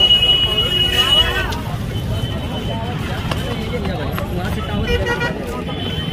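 Crowd voices and road traffic, with a high horn note sounding until about a second and a half in, a shorter horn blast around four to five seconds in, and the high note returning near the end.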